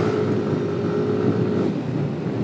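Motorcycle riding at road speed: a steady engine hum under wind rush on the microphone, the hum fading shortly before the end.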